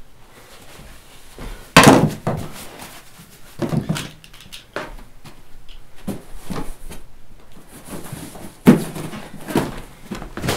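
Irregular thumps and knocks of belongings and cardboard boxes being handled and tossed about in hurried packing, in a small room. The loudest bang comes about two seconds in and another strong one near the end.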